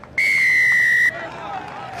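Referee's whistle blown once in a single steady blast of about a second, signalling the try awarded in the corner.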